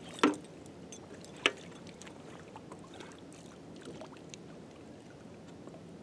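Two sharp knocks, about a quarter second in and again about a second and a half in, as decoys are handled against the side of a small boat, with a few lighter ticks over faint water sounds around wading legs.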